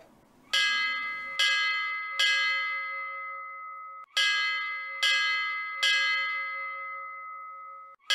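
Three bell strikes about a second apart, each ringing on and slowly dying away. The same three strikes start again about four seconds in.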